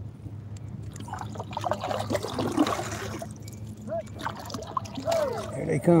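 Voices of a rowing crew calling to one another across the water, unintelligible, from about a second in, with water trickling close by.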